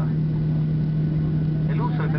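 Cabin noise of a Boeing 737-700 rolling along the runway after landing: a steady rumble from its CFM56 engines and wheels with a constant low hum. A cabin PA announcement starts again near the end.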